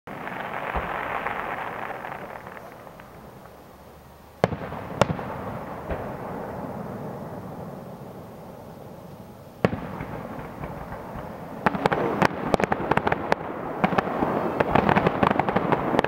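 Aerial fireworks shells bursting. Single sharp bangs come about four and a half, five and nine and a half seconds in. From about twelve seconds in, a rapid, building barrage of bangs marks the display's finale.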